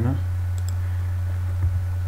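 Two quick, sharp computer mouse clicks about half a second in, over a steady low electrical hum.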